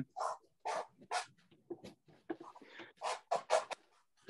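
Palette knife scraping wet paint down a canvas in short strokes, a few spaced out at first, then four quick strokes in a row near the end.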